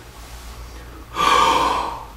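A man's deep, audible breath in through the open mouth, lasting just under a second from a little past halfway. It is a demonstration of a deep inspiration with the hands behind the neck, a position that lets him take in a little more air.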